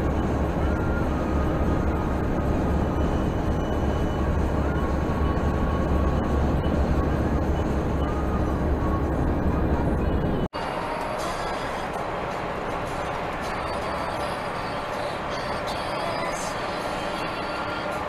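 Steady road and engine rumble heard inside a truck's cab through a dashcam, heavy in the low end. About ten seconds in it cuts off abruptly and a different, slightly quieter road noise with more hiss takes over.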